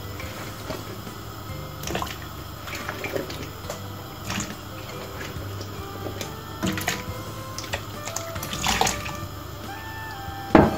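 Peeled potato chunks dropped into a pan of boiling water, one every couple of seconds, each landing with a short splash over the low steady noise of the water.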